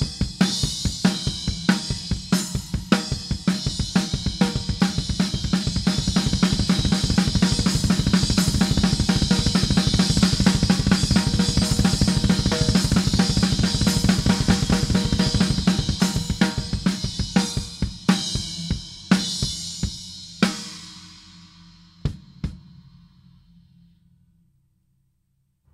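Drum kit played in a triplet feel: snare drum and crash cymbals struck with alternating hands over rapid double-bass kick drum strokes. The dense playing thins to scattered hits after about 17 seconds, and the cymbals ring out and fade near the end.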